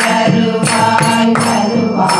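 A group of voices singing a devotional chant together, with hand claps and a double-headed barrel drum striking a steady beat about every 0.7 seconds.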